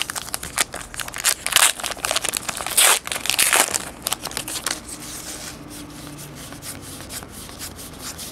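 A trading-card pack wrapper being torn open and crinkled by hand: a dense run of crackles, loudest in the first four seconds or so, then quieter handling.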